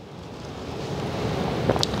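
Steel BOA lace cable being worked and pulled through the plastic dial spool by hand: a steady rustling, scraping hiss that grows louder, with two small clicks near the end.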